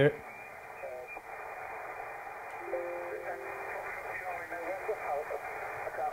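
Received 40-metre lower-sideband amateur radio audio from a remotely operated Icom IC-7300: band hiss with a station's voice coming through, and a couple of brief steady tones in the middle. The audio is cut off sharply above the narrow receive filter, and the reception is pretty good quality.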